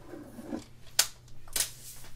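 Paper trimmer being worked on scrapbook paper: a soft scrape, then one sharp click about a second in, and a brief rustle as the cut paper is slid off.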